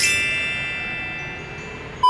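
A single bell-like chime struck once at the start, its high ringing tones slowly fading away; an added sound effect over the cut.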